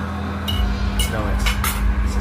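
Metal forks clinking against plates while eating, about five sharp chinks starting about half a second in.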